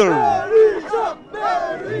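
Speech: a man talking loudly and emphatically over a protest crowd.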